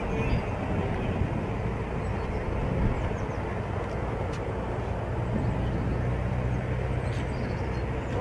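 A vehicle engine running with a low, continuous drone that settles into a steadier, even hum about halfway through.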